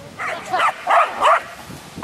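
Young dog barking excitedly while running, four short barks in quick succession.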